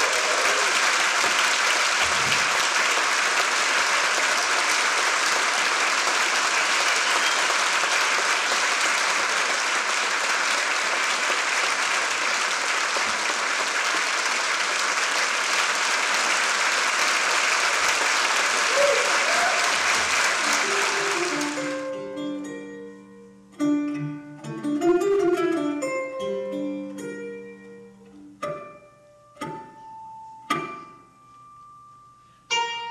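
Concert audience applauding steadily for about twenty seconds; the applause then dies away and a plucked string instrument starts playing scattered single notes.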